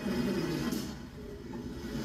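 Stick-pack packaging machine running, heard played back from a video: a steady mechanical hum that starts suddenly.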